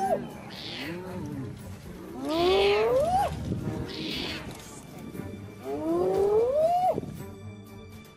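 Spotted hyenas whooping: three long calls a few seconds apart, each rising steadily in pitch over about a second and then dropping off sharply, with hissier higher sounds between them.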